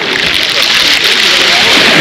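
Small waves washing in over the sand at the sea's edge, a steady rushing hiss of water and foam.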